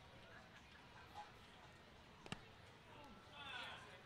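A single sharp crack about two seconds in as the pitched baseball hits the catcher, over faint ballpark ambience. It is followed near the end by a faint voice-like cry.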